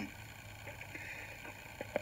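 Faint steady low hum and hiss, with a few faint clicks.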